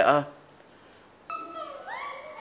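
A single long, high-pitched call starts about a second and a half in. Its pitch slides upward and then eases down.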